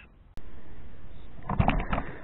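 A single sharp click, then steady outdoor background noise with a low rumble. A man's voice starts near the end.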